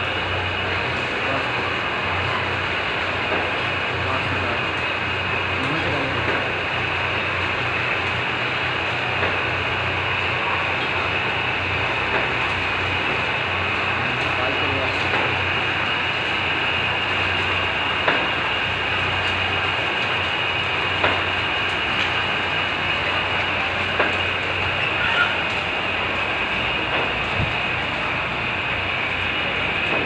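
Egg-collection conveyor belts and their drive motors running steadily in a poultry layer house, a continuous mechanical rattle over a low electrical hum. A few sharp clicks stand out in the second half.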